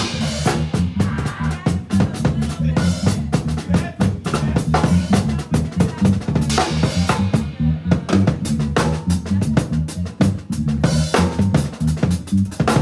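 Drum kit played fast in gospel-chops style: dense strokes on snare, rims and bass drum with cymbals, over sustained low notes underneath.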